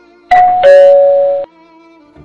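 Two-tone doorbell chime, a higher note then a lower held note (ding-dong), cut off sharply after about a second.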